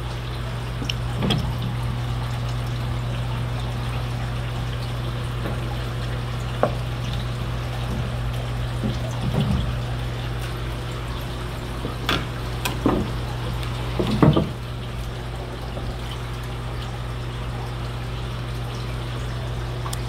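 Water splashing and sloshing in a few short bursts as a mesh fish net is swept through a tank by hand, the strongest splash about two-thirds of the way in. A steady low hum runs underneath.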